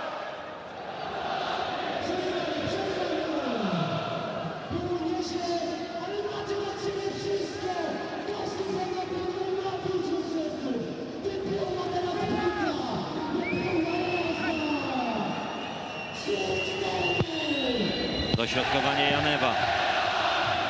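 Football crowd in the stadium stands singing and chanting together, many voices at once, carried through the TV broadcast sound.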